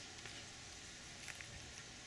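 Faint outdoor background hiss with a couple of small soft clicks a little past halfway.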